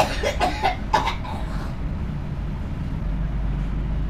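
A metal spoon scraping and clacking against a steel bowl while stirring minced meat and chopped onions, a few short strokes in the first second or so. A steady low rumble runs underneath and grows louder about three seconds in.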